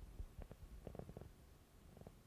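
Near silence: room tone with a low rumble and a few faint short clicks between about half a second and a second in.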